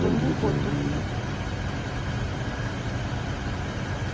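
A man's voice ends on one word in the first second, then a steady low background rumble carries on alone for about three seconds.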